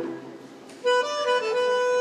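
Argentine tango music led by a bandoneón playing sustained reed chords. One chord fades near the start, and a new chord with a held melody note comes in just under a second later.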